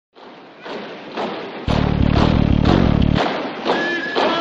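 Boots stamping on pavement in a ceremonial marching drill: a run of heavy thuds, with a loud low rumble in the middle. Music with held notes comes in near the end.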